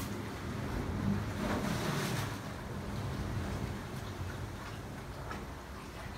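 Low, steady rumble of ocean surf and wind heard from inside a rocky sea cave, a little louder in the first couple of seconds.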